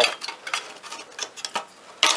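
A small cooling fan being worked loose by hand from its anti-vibration mounts in a sheet-metal chassis: scattered clicks and light rattles of plastic against metal, with handling rustle.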